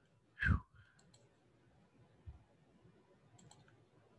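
A woman's breathy "whew" of relief, falling in pitch, then near quiet with a few faint clicks.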